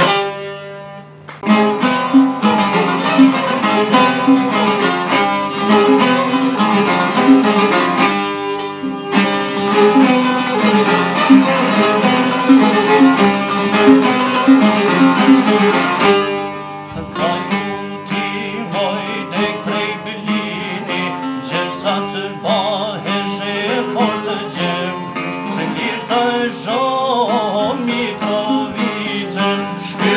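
Two-string Albanian çifteli lutes played together, a fast-picked melody over a steady drone, after a brief pause just after the start. The playing turns lighter about halfway through, and men's voices come in singing a folk song.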